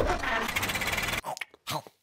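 Cartoon elf delivery truck pulling away: a thump, then a fast, even mechanical rattle for about a second that cuts off suddenly.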